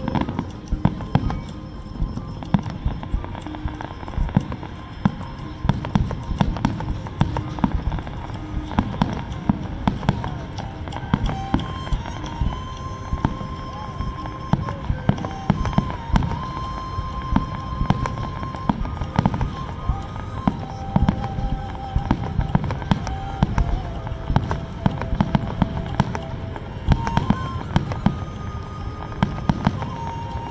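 Aerial fireworks shells bursting in quick succession over the water, a continuous run of bangs and crackles, with music playing along to the show.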